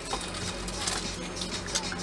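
A car engine idling, heard from inside the cabin as a steady low hum, with light handling noises over it.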